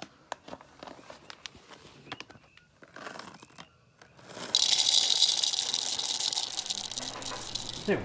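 A few soft clicks and knocks, then about four seconds in a loud, steady hiss sets in and cuts off suddenly near the end.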